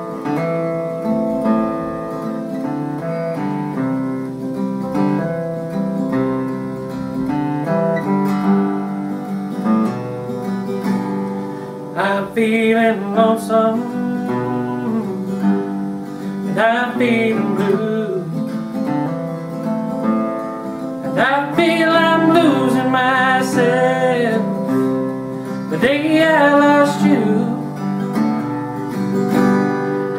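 Acoustic guitar playing the introduction of a country song, note by note at a gentle pace; a man's voice joins in about twelve seconds in, singing over the guitar.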